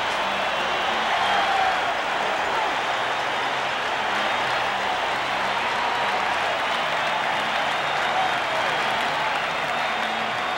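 Large football stadium crowd cheering and applauding steadily, a sustained ovation for the home team's long punt return.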